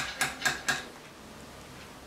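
A run of four sharp metallic clicks about a quarter second apart over the first second: a circlip and circlip pliers clicking against a motorcycle clutch master cylinder's piston bore as the clip is fitted to retain the piston.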